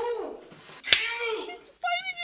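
A single sharp smack about a second in, from a slapstick scuffle on a film soundtrack, set among short vocal cries and exclamations.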